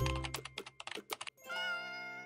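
Keyboard typing sound effect: rapid clicks over intro music with a low bass note. The clicks stop about a second and a quarter in, and a sustained chord comes in.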